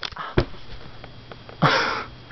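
A few knocks and a thump from the camera being handled and jerked, then, about one and a half seconds in, a loud breath close to the microphone, heard as a sniff, lasting about a third of a second.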